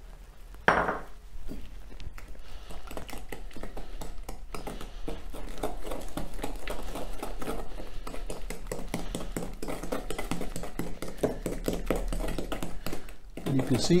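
Wooden spoon beating a cake mixture of creamed butter, sugar and egg in a glass bowl: a fast, steady run of scraping, knocking strokes against the glass that stops about a second before the end. A brief knock about a second in.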